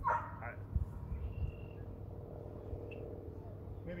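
A dog whining: a short falling whine right at the start, then a long, steady, faint whine.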